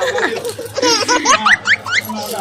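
People laughing, with a run of short, rising, high-pitched cries in the second half.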